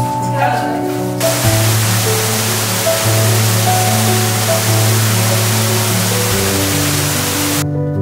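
Background music of held, slowly changing notes, joined about a second in by the loud rushing of an underground waterfall that cuts off suddenly near the end.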